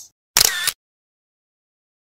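A short editing sound effect for a section-title transition: one brief, sharp, noisy burst about half a second in, shutter-like.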